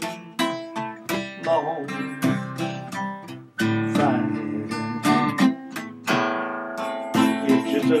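Acoustic guitar strummed in a steady rhythm, its chords ringing on between strokes.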